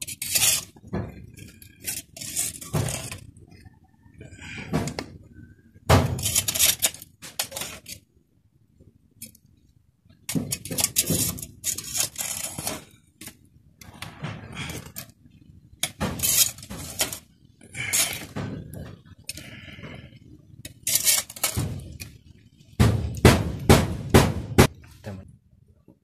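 Wood ash being scraped and scooped into a coconut-shell half: a series of short, irregular gritty scrapes and knocks. Near the end comes a quick run of about six sharp clinks as a glass bottle is handled against the shell.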